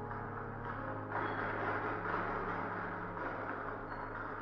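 Radio-drama sound effect: a soft scraping, rushing noise that rises about a second in and lasts about two seconds, over a steady low hum.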